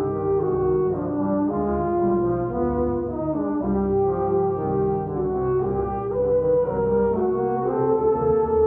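Tuba-euphonium ensemble playing in harmony: several parts hold chords and move note to note, euphoniums on top and tubas down low.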